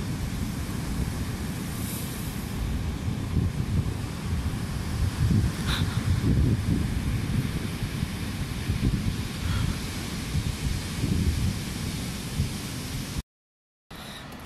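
Wind buffeting the microphone in gusts, a heavy low rumble over the steady wash of breaking surf. It cuts off suddenly near the end.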